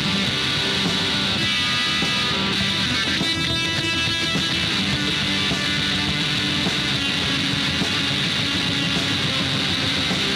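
A rock band plays an instrumental stretch led by distorted electric guitar. A high ringing tone rises above the band from about two to four seconds in.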